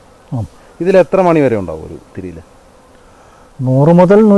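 Men's voices talking in short phrases, with a pause of about a second before the talk picks up again near the end.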